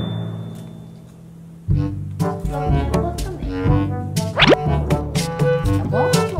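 Background music with a bouncy bass line. It fades out over the first second and a half, then starts again abruptly. Partway through, a quick rising glide sounds, like a cartoon sound effect.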